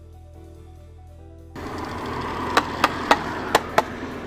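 Faint background music at first. About a second and a half in, a louder rustling, scraping noise sets in with five sharp knocks, as the cut-off plastic floor air duct is worked loose and lifted out.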